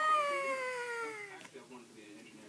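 One long, high-pitched vocal call that rises briefly and then slides slowly down in pitch, fading out about a second and a half in.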